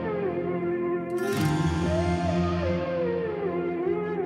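Background music: a slow looping phrase with a gliding lead melody over a sustained bass, and a brief bright swell about a second and a half in.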